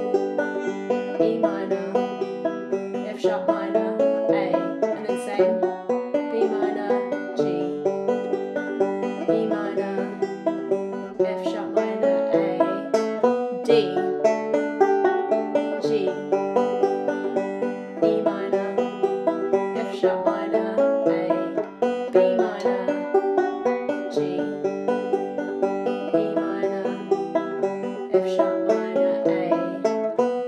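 Five-string resonator banjo fingerpicked in a steady rolling pattern, several bright plucked notes a second, working through the chorus chord changes in D (B minor, G, E minor, F sharp minor, A).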